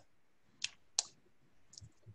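Two short, sharp clicks about a third of a second apart, followed near the end by a couple of faint ticks.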